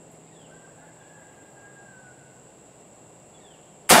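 A single shotgun blast from a Stoeger M3500 12-gauge semi-automatic firing a heavy 3.5-inch buckshot load (twenty .31-calibre pellets), with a long echoing tail. It comes near the end, after several seconds of quiet outdoor background with a steady high-pitched whine.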